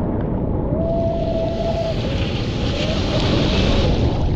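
Ocean water churning and sloshing against a surf camera in the lineup, with a low rumble, and a breaking wave's hiss of whitewater and spray rising about a second in and building towards the end. A thin wavering tone rides over it.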